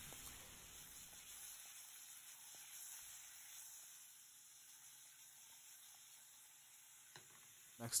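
Faint sizzling of wavy-cut carrot slices and yellow squash searing in oil in a frying pan, dying away to near silence about halfway through.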